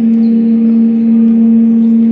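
A sports hall's horn sounding one long, loud, steady note.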